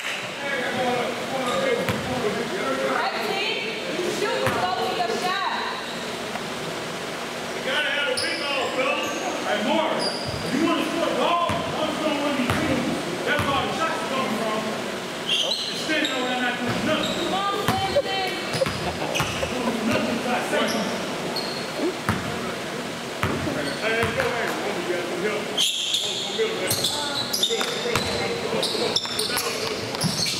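A basketball bouncing on a hardwood gym floor, irregular sharp strikes among players' footsteps, with indistinct voices carrying in a large, echoing gym.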